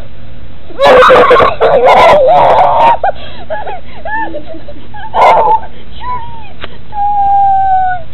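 Whimpering, wailing cries: a loud stretch of crying about a second in, then short squeaky rising-and-falling whimpers, a brief loud cry, and one long falling whine near the end.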